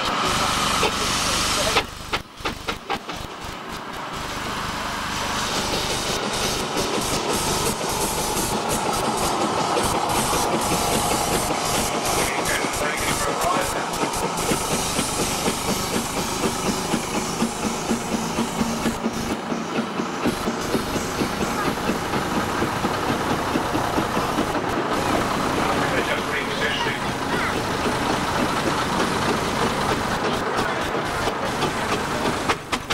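Vintage heavy vehicles running as they move slowly: a steam traction engine and a diesel ballast tractor, with voices in the background. The worn-tape audio is hissy and drops out briefly about two seconds in.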